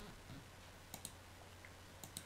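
Near silence with a faint low hum, broken about a second in by a single computer mouse click.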